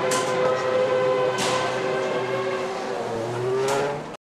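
Formula One car's 2.4-litre V8 engine running in the garage at a steady high idle, its pitch rising briefly near the end.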